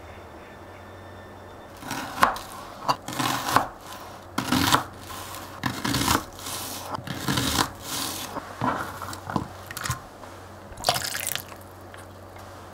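Kitchen knife slicing through a raw onion onto a plastic cutting board: a run of crisp cuts, roughly one to two a second, starting about two seconds in. Near the end there is a short burst as the onion slices are gathered and put into a bowl of vinegar water.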